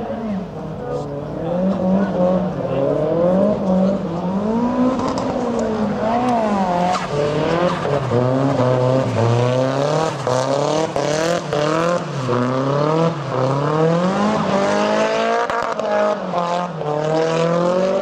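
Drift car's engine revving up and down over and over as the throttle is worked through the slides. From about halfway a rising hiss of tyre noise joins it.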